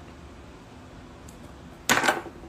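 Low room hum while a cigarette is lit, then near the end a sudden loud puff of breath into the phone's microphone.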